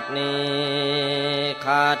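A voice chanting or singing Thai devotional lyrics to music, holding one long steady note, then a brief higher note near the end.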